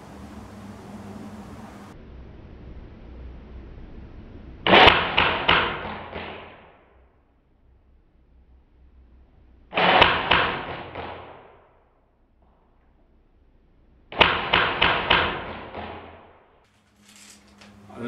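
CYMA MP5 airsoft electric gun firing three short bursts about five seconds apart. Each burst is a quick string of sharp shots that trails away.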